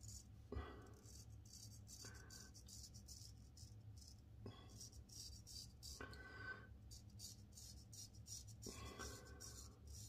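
Ribbon 1000 straight razor scraping through stubble in short, repeated strokes, a faint crackly scratching with a few longer strokes every second or two.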